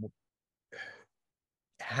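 A person draws one short audible breath partway into a pause in speech, between stretches of dead silence.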